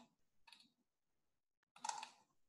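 A few faint clicks of computer keyboard keys in otherwise near silence, with a louder click near the end.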